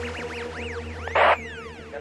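Electronic dance-mix transition: a run of quick synth zaps that each rise and fall in pitch, over the fading tail of a held chord and a low bass drone. A short burst of noise about a second in is the loudest moment.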